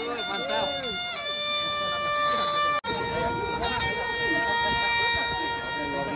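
A trumpet playing long held notes, changing note about a second in; it cuts out abruptly near the middle and comes back on a lower held note, with crowd voices underneath.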